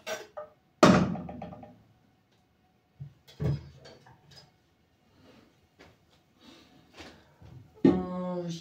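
Kitchenware knocking as a cook works at the stove. A sharp knock rings and fades about a second in, a second knock comes about three and a half seconds in, and there are light taps in between.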